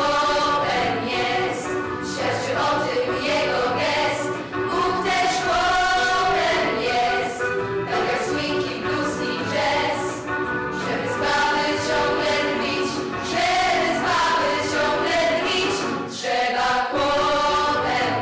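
A girls' vocal ensemble singing together into handheld microphones, several voices carrying a melody in unbroken phrases.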